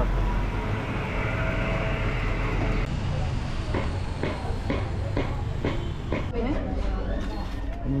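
City street ambience: a steady low rumble of traffic for about three seconds. It then changes abruptly to background voices mixed with short clattering sounds.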